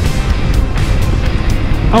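Steady rush of wind over a helmet-mounted microphone, mixed with a cruiser motorcycle's engine running at highway speed.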